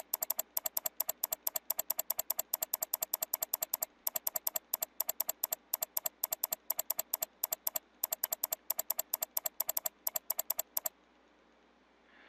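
Computer mouse button clicked over and over in a rapid, even run, with two brief pauses, stopping about eleven seconds in.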